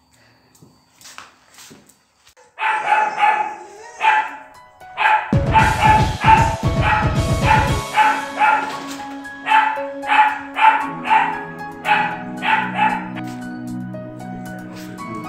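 A dog barking in a quick series of short, high barks, about two to three a second, starting a couple of seconds in. Background music with steady held notes comes in under the barking partway through.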